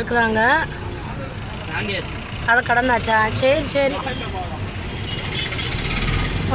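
Several people talking and calling out over the steady low hum of a car's engine, heard from inside the car as it creeps through traffic.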